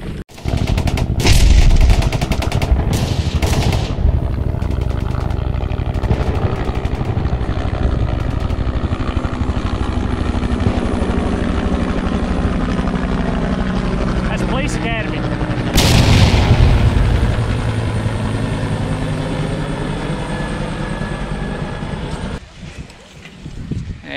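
Helicopter flying overhead: a loud, steady rapid chop of rotor blades over an engine drone, loudest about sixteen seconds in, then easing off before it cuts off near the end.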